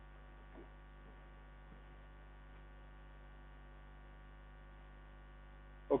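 Faint, steady electrical mains hum: a low buzz with a stack of evenly spaced overtones that holds unchanged.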